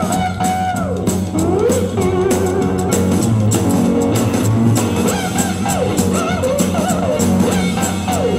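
Live band music led by an amplified three-string cigar-box guitar, its notes bending and gliding up and down in pitch over a steady percussion beat.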